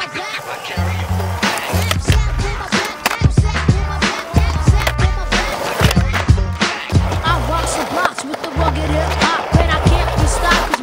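A skateboard on concrete, its wheels rolling with repeated sharp clacks and knocks of the board, mixed with a music track that has a deep repeating bass line and vocals.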